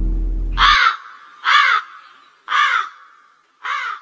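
A crow cawing four times, about a second apart, after orchestral music with deep drum notes cuts off abruptly a little under a second in.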